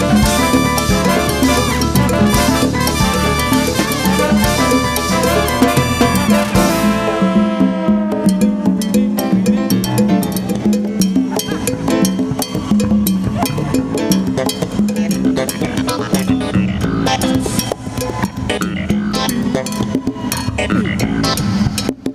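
Live salsa band playing loud with drum kit and cymbals. About seven seconds in the full band cuts out on a ringing, falling chord, leaving a sparser groove of bass and percussion strikes.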